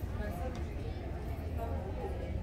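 Indistinct voices of people talking in the background over a steady low hum.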